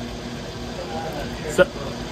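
Steady low hum of a machine or fan running, with a faint voice in the background about a second in and a short spoken word near the end.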